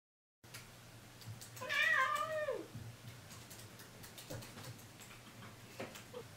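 A house cat meows once, about a second and a half in: a single call of about a second that drops in pitch at the end. Light clicking of laptop keys follows over a steady low room hum.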